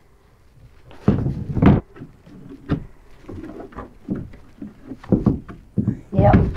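Irregular hollow clunks and knocks from a kayak's framed seat being grabbed, shifted and lifted against its plastic hull. The loudest come just over a second in and again about five seconds in.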